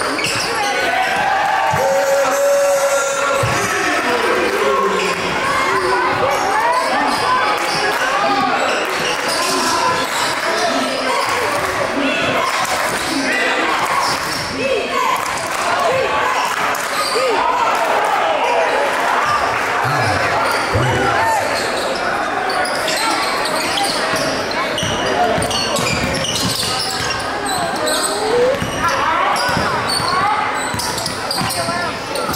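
Basketball dribbled on a hardwood gym floor, with voices from players and spectators, echoing in a large hall.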